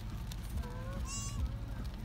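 A short, high, honking animal call about a second in, preceded by a lower gliding tone, over a steady low rumble.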